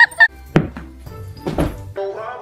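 A run of pitched musical notes ends just after the start, followed by two dull thumps, one about half a second in and another near the end.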